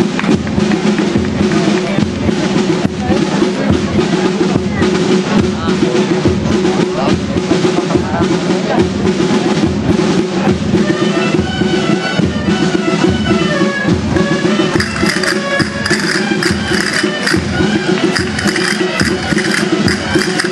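Live folk dance music: a steady drum beat under held low tones, with a high wind melody coming in about halfway through.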